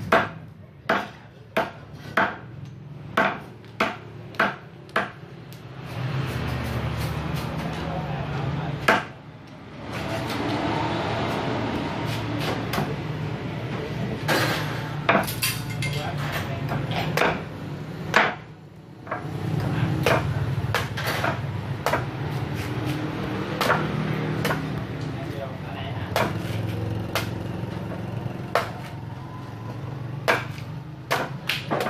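Kershaw Camp 12 machete chopping: a quick run of about eight sharp blade strikes through a thin branch on a wooden block. Then scattered strikes into a green coconut's husk, which come thick and fast near the end.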